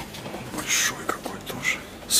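A person's quiet, whispery voice: a few short hissing sounds with no clear voiced words between them.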